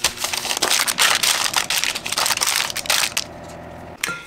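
Parchment paper crinkling and crackling as it is pressed and folded into a baking pan. It stops about three seconds in.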